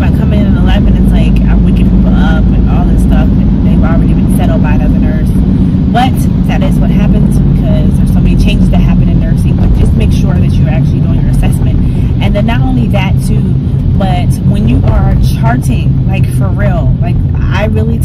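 Steady low rumble of road and engine noise inside a moving car's cabin, with a woman's voice talking over it throughout.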